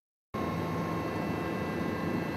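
After a third of a second of silence, a steady drone of aircraft engine noise sets in, with a thin steady whine running through it.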